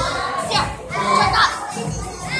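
Children's voices calling out and chattering, with a few high excited shouts in the middle, over background music.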